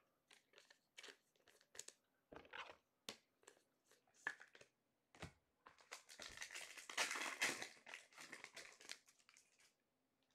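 Trading cards and packs being handled with light scattered clicks and rustles, then a few seconds of crinkling and tearing as a card pack's wrapper is ripped open, loudest around seven seconds in.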